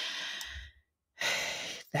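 A woman sighs out, then draws a breath in about a second later, close to the microphone.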